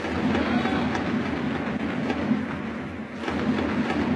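Ballpark crowd noise under a stadium dome: a dense, steady din of the crowd with a crackle of clapping running through it.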